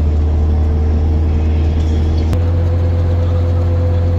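Steady low drone of a UAZ Patriot under way, heard inside the cabin, with a thin steady whine over it. A little over two seconds in the drone shifts abruptly with a click, and the whine steps slightly higher.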